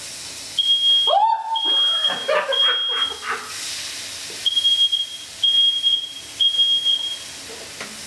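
Smoke alarm sounding in its standard three-beep pattern: two sets of three high, steady beeps about a second apart, with a pause of about a second and a half between the sets.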